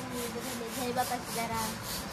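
A steady rubbing or scraping sound repeating in a quick, even rhythm, with faint voices in the background.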